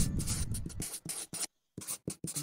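Pen scribbling on paper in quick scratchy strokes, breaking off briefly about one and a half seconds in before a few more strokes.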